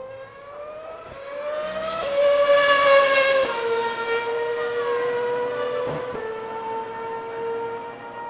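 Racing car engine sound effect: a single high engine note that swells, drops slightly in pitch as it passes, then holds steady and fades out, with a brief click about six seconds in.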